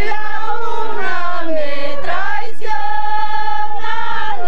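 A group of women singing together in high voices, holding long drawn-out notes that glide from one pitch to the next.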